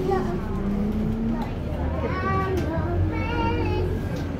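Low rumble of a city bus in motion, heard from inside the cabin, under passengers' voices; the rumble grows stronger about halfway through.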